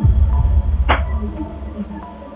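Horror-style sound design: a deep bass boom that falls in pitch and runs on as a low throbbing drone, with a sharp whoosh about a second in.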